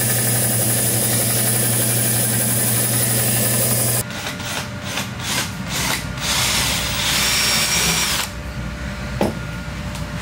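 Stationary belt sander running with a wooden dowel pressed against the belt: a steady motor hum with abrasive hiss that cuts off about four seconds in. Then a cordless drill bores into the end of the wooden dowel, its whine rising before it stops about eight seconds in, followed by a single knock near the end.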